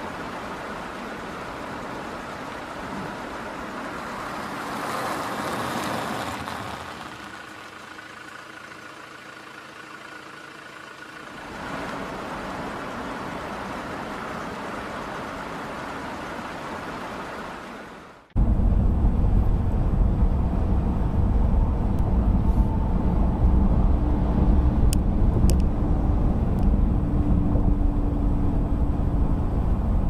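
Road noise heard from inside a moving car: a steady hiss of traffic and tyres for most of the first half, then a sudden cut to a much louder, deep, steady road rumble.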